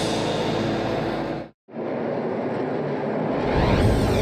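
Race broadcast audio of music mixed with race car engine noise, cutting out to dead silence for a moment about one and a half seconds in, then coming straight back.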